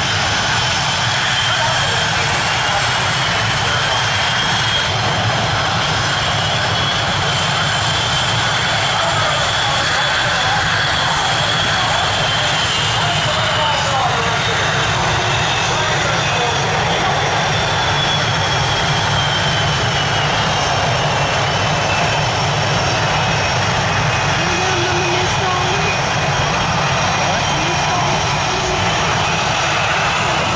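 Jet aircraft engine noise: a loud, steady rush with a thin whine that slowly glides up and down in pitch as a jet flies past.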